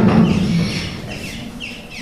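A woman's amplified speech trails off, then a quieter pause in which a few faint, short, high chirps are heard, like small birds.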